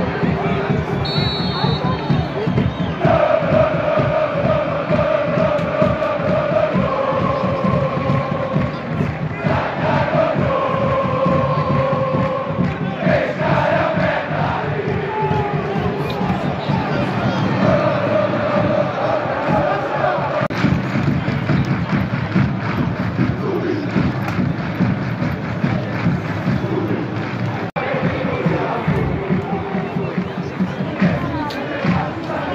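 A stadium crowd of football ultras singing a chant together, in long held notes, over continuous crowd noise. The sound breaks off for an instant near the end.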